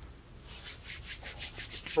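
Glue-coated fingers rubbing in quick, repeated dry strokes, several a second, over tacky Titebond wood glue.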